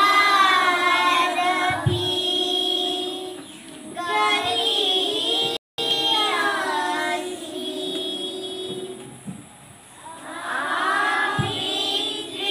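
A group of children singing a slow prayer song together, led by a girl singing into a microphone. The song goes in long held notes with short breaks between phrases, softer for a moment past the middle before a new phrase swells near the end.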